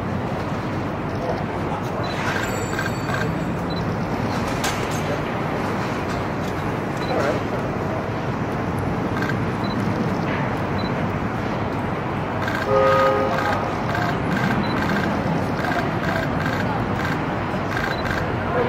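City street ambience: a steady wash of traffic with indistinct voices, and a short horn-like toot about thirteen seconds in.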